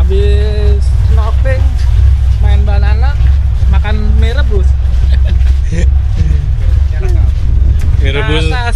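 A man talking to the camera in short phrases over a loud, steady low rumble.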